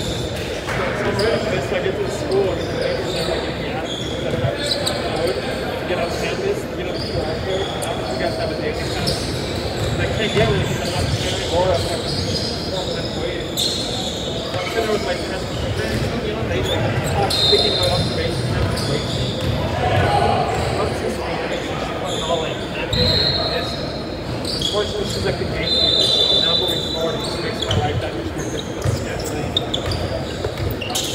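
A basketball game in a large echoing gym: a ball bouncing on the hardwood court amid players' voices, with several short high squeaks scattered through.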